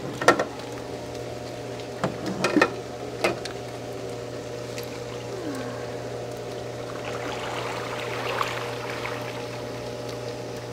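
Water splashing in an above-ground pool as someone climbs in at the plastic ladder: a few sharp splashes in the first few seconds, then softer sloshing later on, over a steady low hum.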